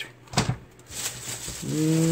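Handling noise as a plastic power adapter is moved across a silicone work mat: a single soft knock early on, then a rustle. Near the end a man's short hummed 'mm' sets in.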